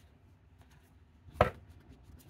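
A single sharp knock on a wooden tabletop about a second and a half in, as a deck of tarot cards is tapped down on the table.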